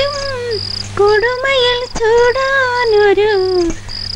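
Crickets chirping in an even rhythm, about two chirps a second, under a louder high, wavering melodic line that holds long notes and bends in pitch.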